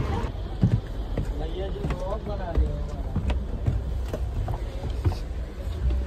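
Indistinct voices of people talking in a busy shop over a steady low rumble, with a few light clicks and knocks.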